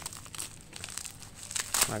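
Plastic bubble wrap crinkling and crackling as hands unwrap it, in irregular bursts with the loudest crackle near the end.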